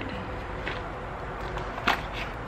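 Handling of a small fabric-covered jewelry box as it is opened, with one sharp click near the end as the lid comes open, over a steady low background rumble.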